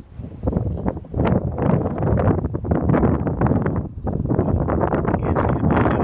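Wind buffeting the camera microphone: a loud, irregular rumbling noise with crackles that swells about a second in and keeps on.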